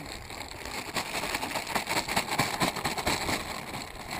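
Plastic chum bag crinkling and rustling as it is worked open by hand: a dense, irregular run of crackles.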